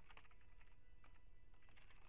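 Faint computer keyboard typing: a few scattered keystrokes.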